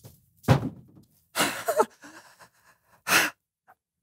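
Three short, breathy gasps from a person, the middle one longest with a brief voiced rise at its end, separated by near-silence.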